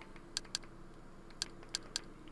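About five short, faint clicks at irregular spacing as the Kodi home menu is stepped through on a Fire TV Stick.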